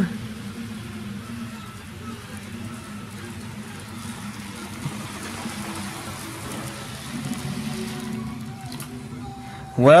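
HO scale model train, a CSX diesel locomotive pulling cars, running on plastic sectional track: a steady motor hum and rolling rumble, a little louder about seven seconds in.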